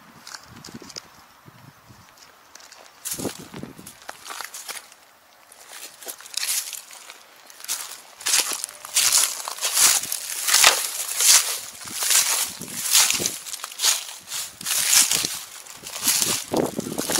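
Footsteps crunching through dry grass and dead leaves: a few scattered steps at first, then from about halfway a steady walking pace of roughly two steps a second, growing louder.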